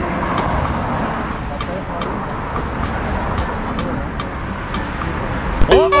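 Street traffic noise from cars passing on a road, with a light, regular ticking high above it about three times a second. A person's loud shout breaks in near the end.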